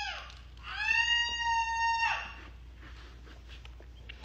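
A cat meowing: a short falling meow right at the start, then one long drawn-out meow of about a second and a half that drops in pitch as it ends.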